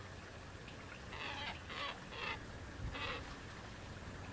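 A bird calling: four short calls in quick succession, a little over half a second apart, starting about a second in.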